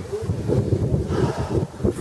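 Wind blowing across the camera microphone, an uneven low rush.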